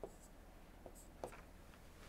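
Near silence with three faint taps of a stylus on an interactive display screen while an annotation is drawn.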